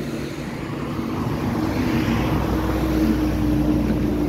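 A motor vehicle engine running: a steady low hum and rumble under a loud, noisy rush.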